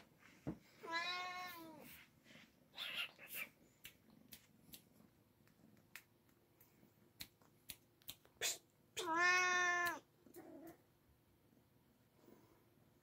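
Oriental kitten meowing: two long meows about eight seconds apart, each rising then falling in pitch, the second followed by a shorter, weaker one. Light taps and rustling fall between them.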